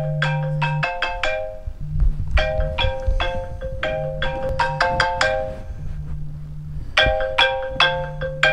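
Smartphone alarm ringing with a marimba-style melody, short repeating phrases of struck notes over a sustained low note, with a brief break in the melody about a second in and some low rumbling just after.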